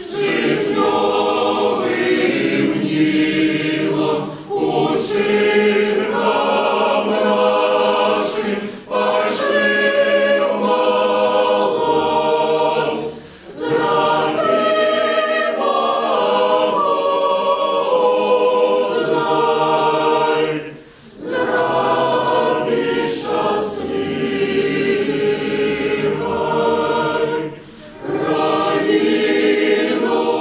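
A choir singing a cappella in harmony, in sung phrases with short breaks between them.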